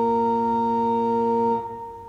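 Church organ holding a sustained final chord, released about one and a half seconds in, with the sound dying away in reverberation.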